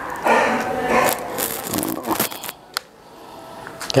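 Handling noise from loading an FX Impact MK2 bullpup PCP air rifle: a short scrape, then a few sharp metallic clicks as its action is worked.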